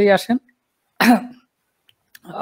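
A man says one word, then about a second in clears his throat once, briefly.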